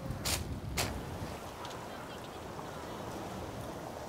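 Steady outdoor ambience on a beach by the sea, an even wash of noise, with two brief knocks in the first second.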